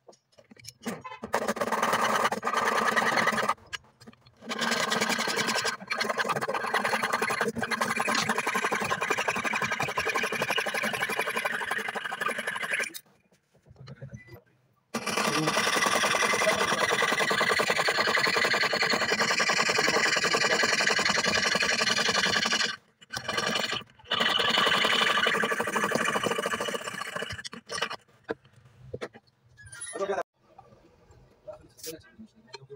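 Jeweller's piercing saw cutting into a strip of silver, its fine blade rasping in rapid back-and-forth strokes. The sawing runs in long bouts broken by brief pauses.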